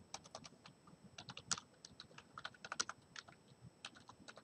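Faint typing on a computer keyboard: a run of quick, irregular keystrokes.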